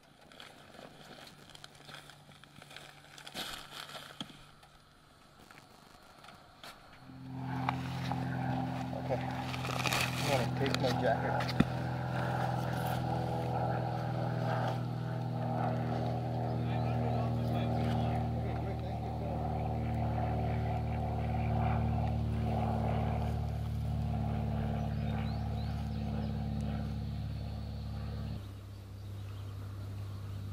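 A vehicle engine comes in about seven seconds in and runs at a steady idle. Its note drops lower near the end.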